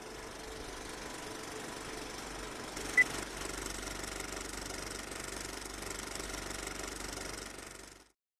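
Film projector running: a faint, steady mechanical clatter that fades out near the end, with one short high blip about three seconds in.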